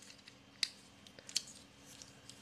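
Small plastic clicks and ticks as the battery cover is slid off the front of a plastic magnetic door/window entry alarm: one sharp click just over half a second in, then a few lighter ticks.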